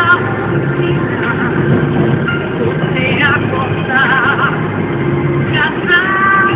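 Steady engine and road noise of a Toyota car, heard from inside while driving. Music with a singing voice plays over it, with wavering sung notes about three seconds in, again about a second later, and near the end.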